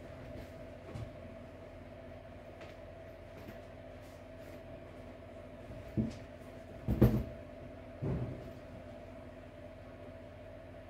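Leather and suede winter boots being handled and set down on a table: a few short dull thumps, the loudest about seven seconds in, over a steady background hum.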